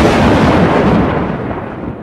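Thunderclap sound effect: a loud, deep crash already under way that rumbles on and fades over about two seconds, then cuts off.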